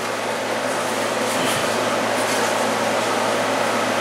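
Steady rushing machine noise with a low hum, like room air conditioning running, with a few faint handling ticks.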